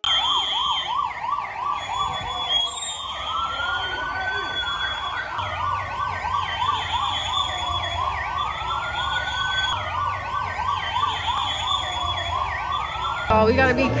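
Several police sirens sounding together: one a rapid yelp sweeping up and down many times a second, another a slower wail rising and falling every few seconds, over a low engine rumble.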